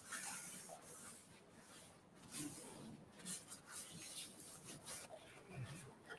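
Faint rubbing and rustling of a napkin wiping the countertop around a serving plate, with soft scattered handling noises.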